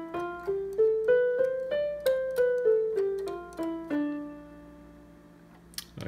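Electronic keyboard with a piano voice playing the D Dorian scale one note at a time, the white keys from D to D. It climbs to the top D about two seconds in and comes back down, and the last low D rings out and fades.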